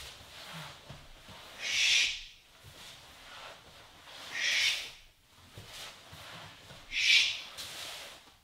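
A man breathing out hard, three times about two and a half seconds apart, in time with a floor exercise, with faint scuffs of movement between the breaths.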